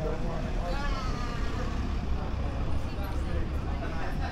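Town-centre street noise: a steady low rumble of traffic, with faint voices of passers-by about a second in.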